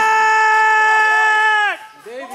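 A commentator's long, held, high-pitched "ohhh!" yell, steady in pitch, then dropping and fading out near the end.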